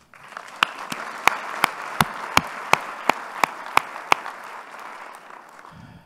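Audience applauding, with loud, evenly spaced claps close to the microphone, about three a second, standing out over the rest; the applause dies away near the end.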